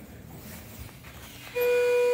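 Schindler 330A hydraulic elevator's electronic arrival chime: a single clear, steady tone starting about one and a half seconds in, with the down-direction lantern lit. Before it, only a quiet hum.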